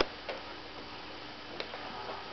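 A few sharp, irregular clicks, the loudest right at the start, as a British Shorthair cat chews and mouths a fabric catnip toy on a wooden floor, over a steady low hiss.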